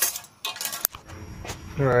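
A few short metallic clinks and a jingle, with a sharp click at the start and another a little after the middle.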